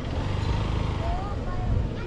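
Motorcycle engine running at low speed, a steady pulsing low sound.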